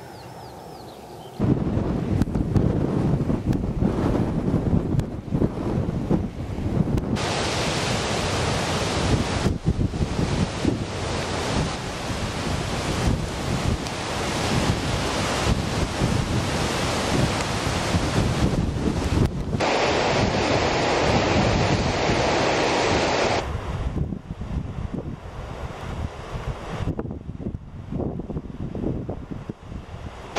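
Strong wind buffeting the microphone: a loud, even rushing noise that starts abruptly about a second and a half in and changes tone at several sudden cuts.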